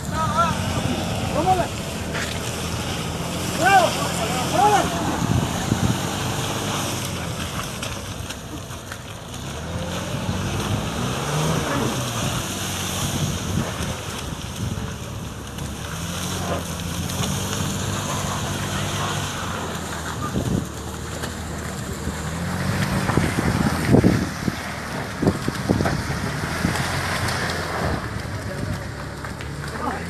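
A vehicle's engine running and revving in stretches as it is pushed out of mud, with people's voices calling out now and then and wind buffeting the microphone.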